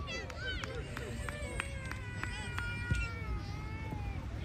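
Young players and onlookers shouting and calling across an open soccer field, in high, drawn-out voices whose pitch rises and falls, with a few faint knocks among them.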